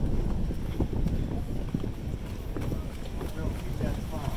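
Outdoor crowd ambience: wind rumbling on the microphone, footsteps on the wooden pier deck, and the indistinct chatter of passers-by.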